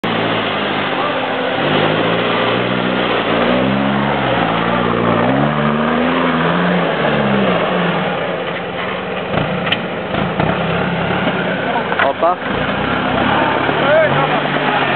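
Toyota Land Cruiser 70 engine revving up and down about three times in a row as the off-roader works through deep mud, then settling into a steady run over a constant noisy background.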